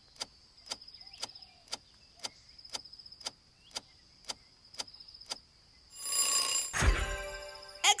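Quiz countdown-timer sound effect: clock-like ticking, about two ticks a second, over a faint steady high tone. About six seconds in, a swelling whoosh and a low thump lead into a ringing answer-reveal sting of several tones, the loudest part.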